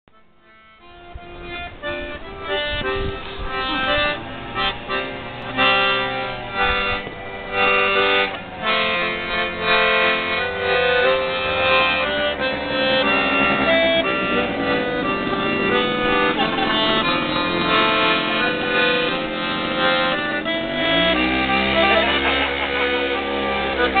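Accordion playing a tune: sustained reed notes and chords, starting about a second in.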